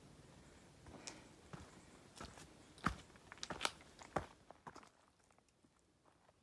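A hiker's footsteps on a rocky forest trail: irregular soft crunches and knocks, the loudest about three seconds in, stopping about five seconds in.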